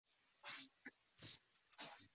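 Near silence on a video-call line, with three faint, short breathy puffs.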